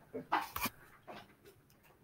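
A few short, faint voice-like squeaks from a young child, in the first second or so.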